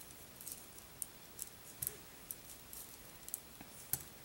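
Knitting needles clicking and tapping lightly against each other as stitches are worked, in faint, irregular ticks.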